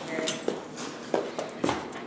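Several light taps and knocks of footsteps on a hard floor, scattered unevenly, with a brief vocal sound near the start.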